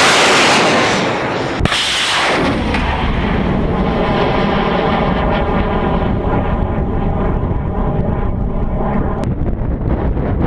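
Liquid-fuel rocket engine burning kerosene and liquid oxygen, a loud rushing roar at liftoff. The sound changes abruptly about one and a half seconds in and again near nine seconds. In between, a tone sweeps downward and then settles into a steady rumble.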